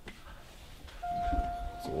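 Elevator arrival chime on a 2004 OTIS Series One hydraulic passenger elevator: one steady electronic tone starting about a second in and held about a second and a half, signalling the car's arrival for the up call. A low rumble sounds beneath it.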